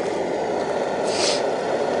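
Liquid-fuel camp stove burning at full flame under a pan, a steady, unbroken rushing noise.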